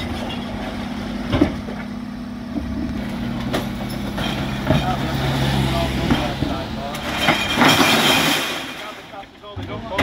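Terberg electric OmniDEKA bin lift on a Dennis Elite 6 refuse truck raising a wheeled bin with a steady motor hum. About three-quarters of the way through there is a loud rattling crash as the bin's load of plastics, glass and tins tips into the hopper.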